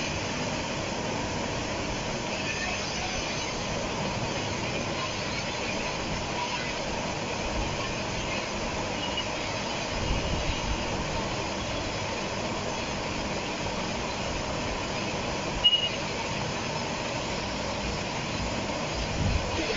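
Steady background noise, an even hiss with low rumble, with one short sharp click near the end.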